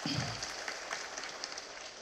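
Audience applause: many hands clapping, holding at a steady level.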